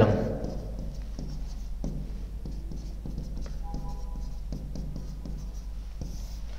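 Pen writing on an interactive touchscreen whiteboard, making faint scattered taps and scratches against the glass over a steady low hum.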